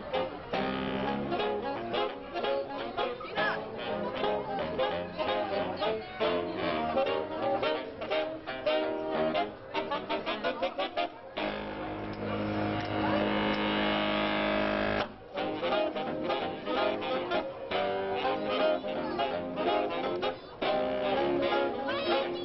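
A saxophone quintet, baritone sax among them, playing a brisk jazz number. About eleven seconds in the band holds one long chord for roughly four seconds, then the quick notes resume.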